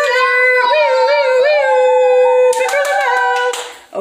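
A young girl's voice in one long, high, wavering howl-like cry, held without a break and fading near the end, with a few short clicks about two and a half seconds in.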